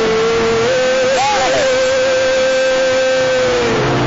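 A voice holding one long, loud note that steps up slightly and then slides down near the end, over a loud rushing wash of many people praying aloud.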